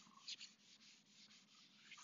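Faint rubbing of an eraser wiping marker off a whiteboard in repeated back-and-forth strokes.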